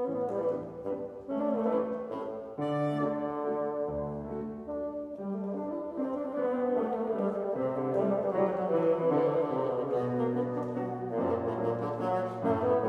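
Bassoon playing a melody of held and moving notes over piano accompaniment, in a live classical performance.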